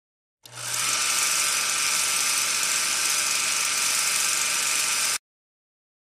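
Film projector sound effect running steadily over a countdown leader, a whirring clatter that starts about half a second in and cuts off suddenly near the end.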